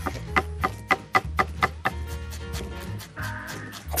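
A chef's knife chopping on a wooden cutting board, sharp taps about four a second over the first two seconds, over background music with a steady bass line.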